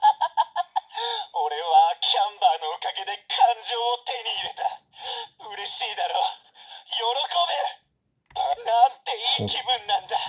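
Sentai Seiza Blaster toy playing a song with a singing voice through its small built-in speaker, tinny and without bass. There is a short break a little after eight seconds.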